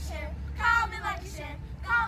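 Several children's voices together with a woman's, singing out in short high phrases over a steady low hum.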